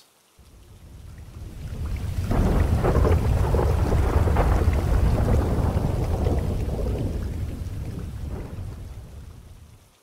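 Thunder rumbling over steady rain. It swells up over the first couple of seconds, holds, then slowly fades away near the end.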